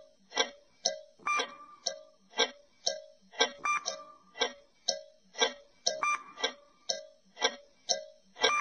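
Quiz countdown-timer sound effect: a clock ticking evenly, about two ticks a second, some ticks with a slight ringing tone.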